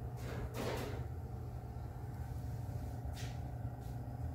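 Steady low indoor hum, with a brief scraping rustle about half a second in and a fainter one near the end.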